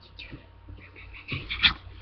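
A small dog whimpering, with a few short, high whines in the second half.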